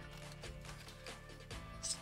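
Quiet background music, with a faint, brief handling sound near the end as a phone is pressed into a plastic phone rig's spring clamp.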